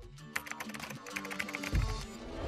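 Computer-keyboard typing sound effect, a quick run of key clicks, over background music, followed by a deep hit near the end.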